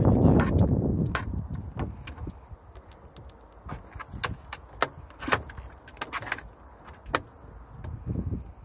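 Irregular sharp clicks, taps and light rattles of things in a car boot, made by a golden eagle picking through them with its beak and shifting its talons on the boot edge. Wind rumbles on the microphone for about the first second.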